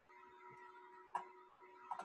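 Two faint sharp clicks, one about a second in and one near the end, from a computer being worked as a file is opened. Under them runs a faint steady electronic hum with two tones.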